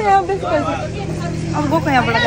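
A vehicle engine running steadily as a low hum under people talking.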